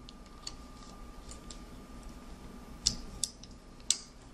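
A few faint, sharp clicks of a loom hook and rubber bands against the plastic pegs of a Rainbow Loom as bands are moved onto the pegs. The clearest clicks come a little before three seconds in and near the end, over a faint steady tone.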